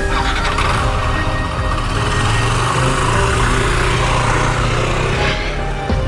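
Motor scooter engine running as it rides off, a steady low hum that ends about five seconds in.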